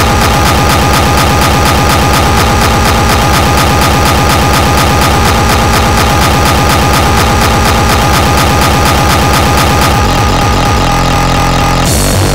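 Speedcore track: an extremely fast, evenly repeating kick drum runs under two steady high held tones. Near the end the kick pattern gives way to a sustained low drone.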